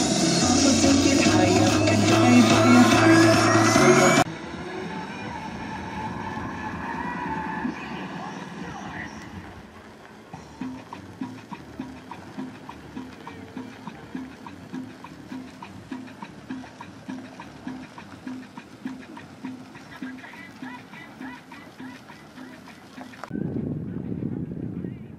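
Loud music with a beat for about the first four seconds, cut off abruptly. Quieter outdoor sound follows, with a faint, steady beat of about two pulses a second, and louder voices near the end.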